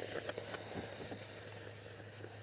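Water sizzling and spitting as it hits the hot tip of an InstantVap oxalic acid vaporizer, flashing to steam. There are a few crackles near the start, then a faint hiss that dies away.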